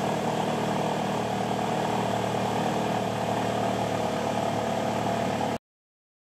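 Alfa Romeo Stelvio engine idling steadily, heard at the exhaust. It starts suddenly and cuts off abruptly after about five and a half seconds.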